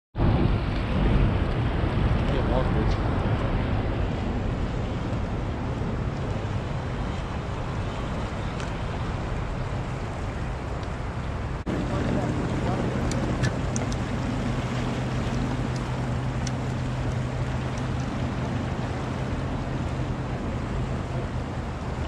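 Fast river current rushing and swirling, with wind buffeting the microphone. A low steady hum joins about halfway through.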